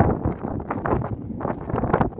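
Strong wind buffeting a phone microphone, a gusty rumbling noise that rises and falls.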